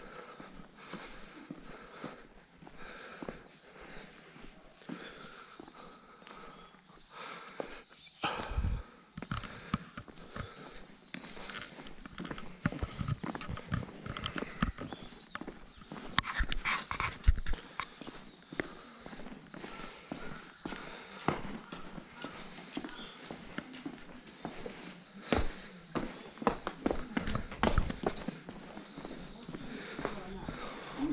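Footsteps of a person walking on stone paving, a string of irregular scuffs and knocks close to the microphone. They are sparse at first and become frequent and louder from about eight seconds in.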